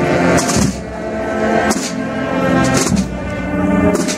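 Brass marching band playing, with tubas and other brass holding sustained chords over percussion strikes that fall about once a second.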